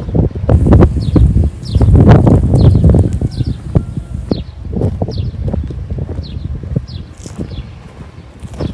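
Wind rumbling on the phone microphone, loudest in the first three seconds, with footsteps on sandy ground while walking. A bird chirps over it with short high calls, about two a second.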